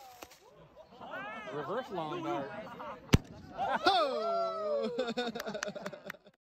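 People's voices outdoors, with one sharp pop about three seconds in. The pop is the ejection charge of the Cesaroni F36 reload motor firing at the end of its 8-second delay, after the rocket has come down.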